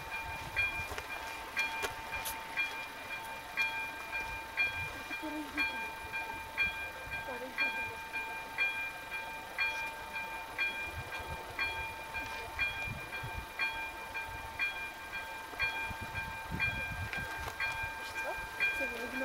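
Electronic warning bell of an active railway level crossing, striking evenly about once a second over a steady high tone. It signals that a train is approaching.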